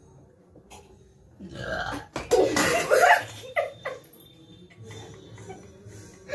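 A loud, drawn-out burp starting about a second and a half in, from someone who has just gulped water from a steel cup.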